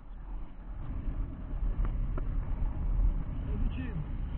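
Wind buffeting the microphone of an action camera on a paraglider in flight: an uneven low rumble that grows louder about a second in.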